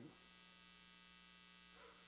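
Near silence with a faint, steady electrical mains hum made of several even tones.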